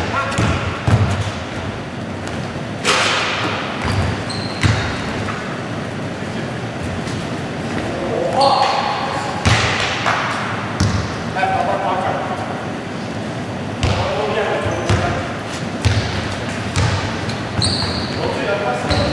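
Indoor basketball game: a basketball bouncing repeatedly on a wooden gym floor, with brief sneaker squeaks and players calling out, all echoing in the hall.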